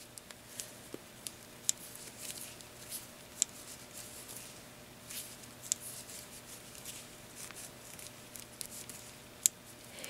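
Wooden knitting needles clicking softly and irregularly as stitches are worked around a sweater on a circular needle.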